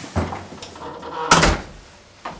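Footsteps in hard shoes on a tiled floor, then a wooden front door pushed shut with a sharp bang about a second and a half in.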